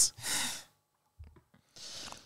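A woman's breathy sigh into a close microphone, then a pause and a second, fainter breath near the end.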